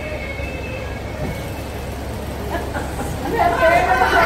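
Steady noisy rumble of a large room just after the dance music stops, with people's voices starting up and growing louder in the last second or so.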